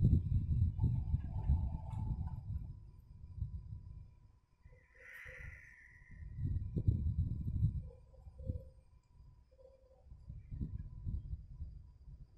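Low rumbling noise in uneven surges, with a brief higher-pitched squeak about five seconds in.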